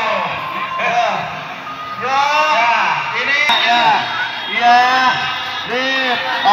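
Voices of people in a crowd nearby, talking and calling out over one another.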